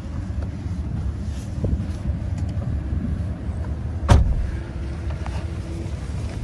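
Low, steady rumble of a 5.7-litre Hemi V8 idling, heard from inside the pickup's cab. A single sharp knock about four seconds in.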